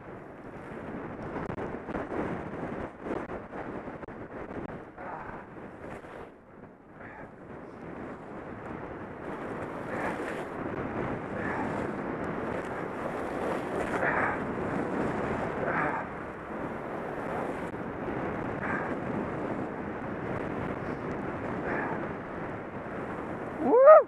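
Snow hissing under a rider sliding down a slope of fresh powder, mixed with wind buffeting a helmet-mounted camera's microphone; the hiss rises and falls in swells.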